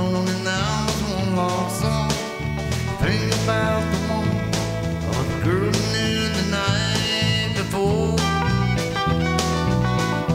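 Live band playing an instrumental passage: a bowed fiddle line with bending notes over electric guitar, bass guitar and drums.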